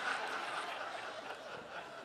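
A congregation chuckling and laughing softly together, the laughter slowly dying down.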